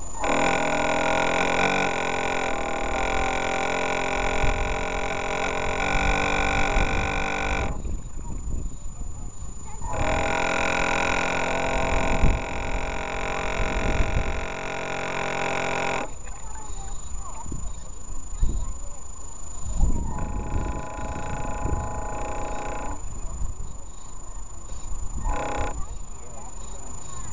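Radio-controlled model boat's onboard electric motor whining in long bursts: about eight seconds, then six, then three, and a short burst near the end, as the throttle is opened and closed. Low rumbling water and wind noise sits underneath.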